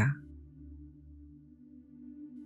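Faint, steady low ambient music drone, a soft sustained pad of a few low tones, after the last word of speech trails off right at the start.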